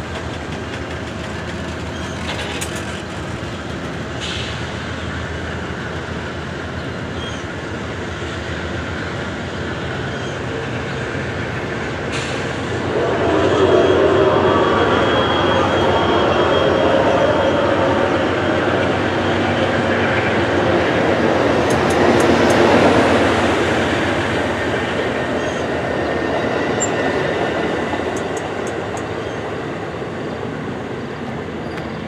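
Amtrak Superliner bilevel passenger cars rolling past as the train pulls out: a steady rumble of steel wheels on rail that swells louder for about ten seconds in the middle, with a few sharp clicks.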